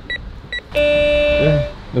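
Two short electronic beeps from an apartment-door intercom keypad as buttons are pressed, followed about three-quarters of a second in by a steady buzzing tone from the intercom that lasts about a second.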